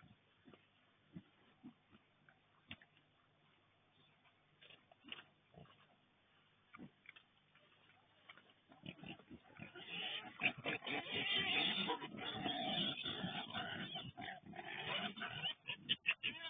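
A group of young wild boars rooting and feeding in loose soil: scattered small clicks and snuffles at first, then from about halfway through a louder, continuous run of grunting and scuffling as they jostle together.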